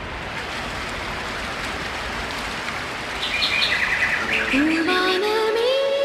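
Opening of a Malayalam film song: a steady rushing nature ambience with birds chirping about three seconds in. Near the end, instruments come in with a sliding tone that rises and then holds.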